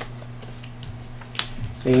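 Tarot cards being handled and laid down on a table: soft card rustles with a few sharp clicks, the sharpest at the start and about one and a half seconds in.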